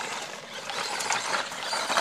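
Small-scale electric RC truggy driving over mulch: a crackly whirr of the drivetrain and tyres on wood chips, with many small clicks. Its battery is running low.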